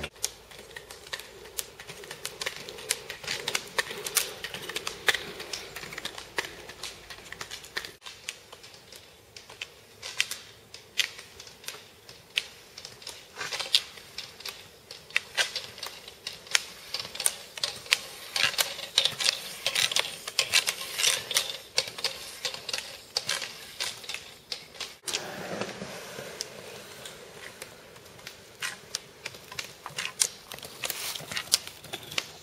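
Rapid, irregular clicking, several sharp clicks a second, from roller skiing on asphalt: ski-pole tips striking the pavement along with the clatter of the roller skis.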